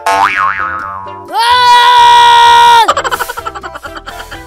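Cartoon comedy sound effects over background music: a wobbling boing right at the start, then a loud held tone that swoops up, holds for about a second and a half, and drops away.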